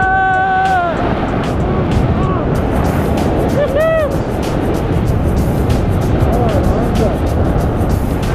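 Strong wind rushing over a small camera's microphone during a tandem parachute descent, a steady loud roar. A man's drawn-out "ohh" opens it, and music plays underneath.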